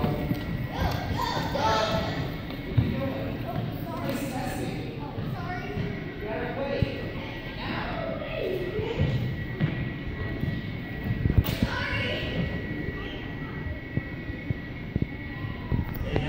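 Indistinct chatter of children's voices echoing in a large gymnasium, with a few sharp thuds on the wooden floor, the loudest about three quarters of the way through.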